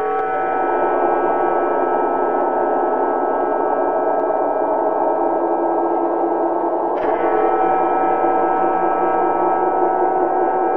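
Loud, sustained sound-effect drone made of many steady overlapping tones, holding level throughout. A short click comes about seven seconds in, after which the mix of tones shifts slightly.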